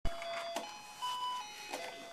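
A simple electronic tune of held beeping notes, stepping up and down in pitch about every half second, with a short click about half a second in.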